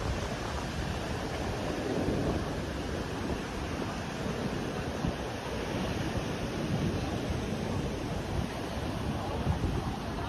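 Wind blowing across the microphone over the steady wash of surf breaking on a sandy beach.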